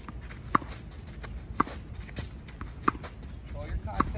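Tennis racquet strings striking the ball on forehands, three sharp hits about 1.2 seconds apart, another just at the end, with fainter knocks of the ball bouncing on the court between them.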